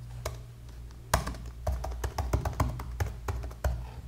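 Typing on a computer keyboard: a run of irregular keystrokes, a single one just after the start, then a quick stream from about a second in.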